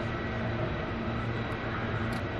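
Steady low rumble of street traffic with a constant faint high whine, no distinct events.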